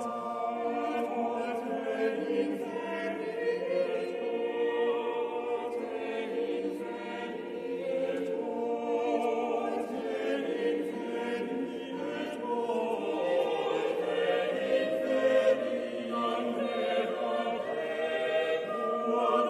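Church choir singing a hymn, many voices together in a large, reverberant basilica.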